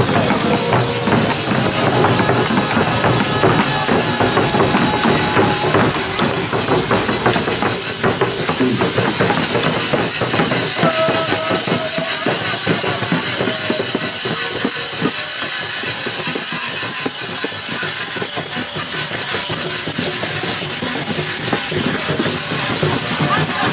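A Congado marinheiro guard playing in procession: snare and bass drums beating a steady, dense rhythm under jingling tambourines, with a few held sung or played notes now and then.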